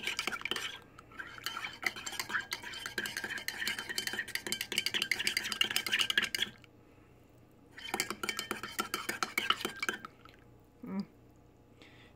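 Metal spoon stirring coffee in a ceramic mug: rapid clinking of the spoon against the mug's sides, with a ringing tone. The stirring stops about six and a half seconds in, starts again a second later, and stops for good at about ten seconds.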